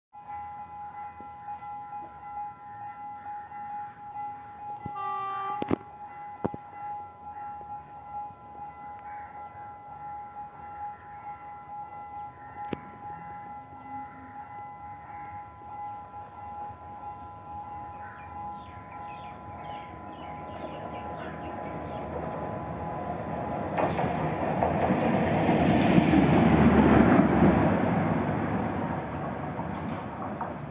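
Sri Lankan rail car 515 approaching on the track on a trial run after repairs, its rumble and wheel noise building to a peak about 26 seconds in and then fading. Before it arrives a steady high whine is heard, with a brief tone about five seconds in.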